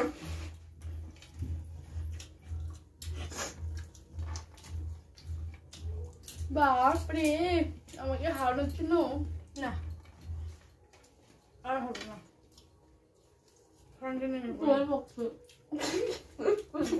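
Women's wordless voices, vocal sounds that rise and fall in pitch around the middle and again near the end, with scattered soft clicks of hands working food on plastic plates. A low pulsing hum underneath stops about ten seconds in.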